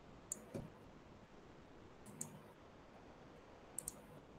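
A few faint computer mouse clicks, spaced irregularly, over near-silent room tone.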